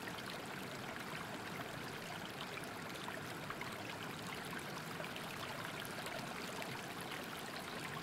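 Faint, steady sound of running water, like a stream or small waterfall, with no breaks or sudden sounds.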